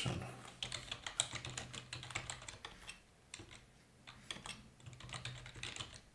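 Typing on a computer keyboard: a run of quick key clicks, a short pause about three seconds in, then more keystrokes.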